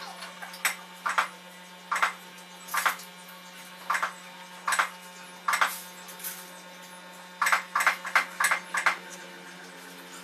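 Pencil scratching short marks on a wooden board, one stroke about every second, then a quick run of five strokes near the end, over a steady low hum.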